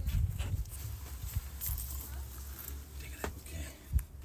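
Handling noise from a phone being carried into a stone hut: a low rumble with scattered footsteps and scuffs on stone, and a sharp knock just before the end.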